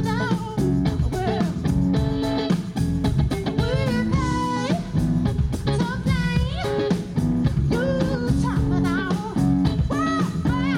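Live soul band playing: a woman's lead vocal over electric guitars, bass guitar and a drum kit keeping a steady beat.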